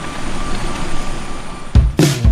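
Small handheld battery fan running close by: a steady whirring rush of air with a faint hum. Near the end a low thump, and music starts.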